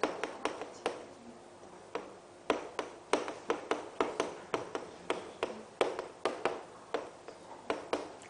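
Chalk tapping against a chalkboard as characters are written: an irregular run of sharp taps, about three a second, with a short lull between about one and two and a half seconds in.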